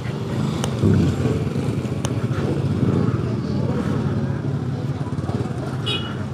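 Small motorcycle engine running steadily at low revs.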